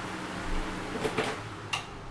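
Steady low room hum with a few faint, short clicks from objects being handled.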